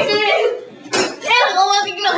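Children's voices speaking loudly, the words indistinct.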